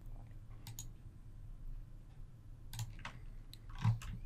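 Several faint computer mouse clicks: a pair about a second in and a few more in the last second and a half.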